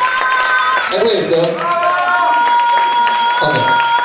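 Audience and people on stage applauding and cheering, with dense clapping throughout, over music with long held notes and some voices.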